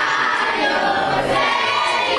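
A group of young voices singing a song together in unison, steady and full throughout.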